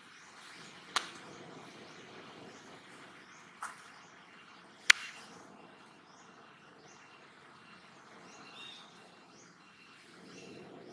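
Faint outdoor forest background with small high chirps from birds or insects, repeating about twice a second. Three sharp clicks come through about one, three and a half, and five seconds in, and the last is the loudest.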